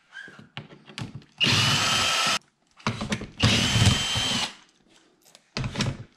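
Cordless drill-driver backing out the bolts that hold a car's front bumper: two runs of about a second each with a steady whine, with small clicks and handling noises between them.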